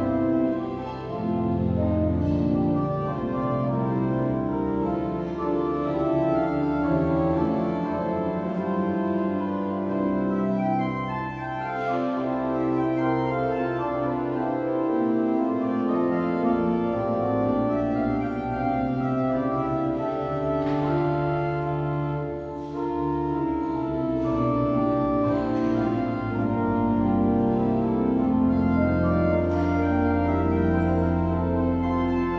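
Pipe organ playing slow, held chords over a low bass line, the notes changing from chord to chord at a steady level.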